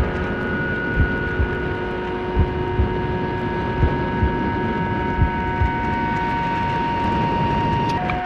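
Airflow rushing past a hang glider in fast flight, heard on a camera mounted on the glider, with a few steady whistling tones and irregular low thumps of wind buffeting the microphone.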